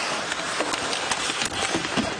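Ice hockey game sound: a steady hiss of skates and arena crowd noise, with a few sharp clacks of sticks on the puck.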